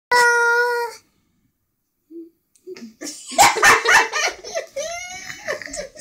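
A young child squealing and making high, wavering vocal noises, with bumps and rustles of handling, from about halfway in. It opens with a single steady held tone lasting about a second, followed by a short quiet gap.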